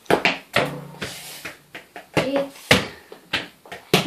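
Mini football being kicked and knocking against the floor and wooden furniture, several sharp knocks spread through the few seconds, with a short stretch of hiss about a second in.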